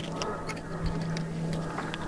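Oyster knife blade clicking and scraping against the shell in small irregular ticks as the meat is cut loose from the bottom shell, over a steady low hum.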